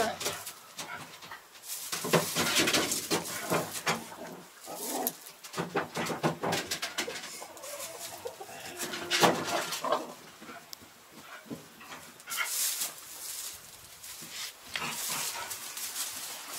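Hay and straw rustling, with irregular knocks and shuffles, as sheep move about a wooden pen and nose at a wooden trough.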